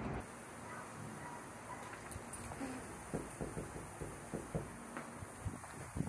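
Footsteps on concrete pavement: a string of soft, irregular steps over a steady faint hiss.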